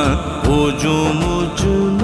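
A man singing an Urdu devotional kalam (naat), with short percussion strokes under the melody in the first half; the voice then settles into a long held note.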